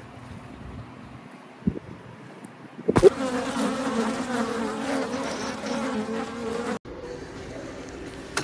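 A steady, slightly wavering buzz starts about three seconds in and cuts off suddenly near seven seconds.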